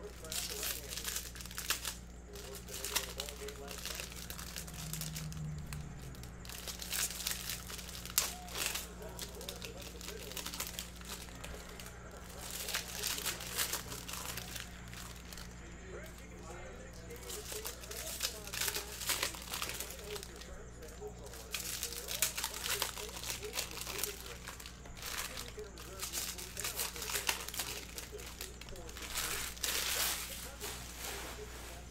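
Foil trading-card pack wrappers crinkling and tearing as packs are ripped open and the cards handled, in irregular rustling spells that come and go, over a steady low hum.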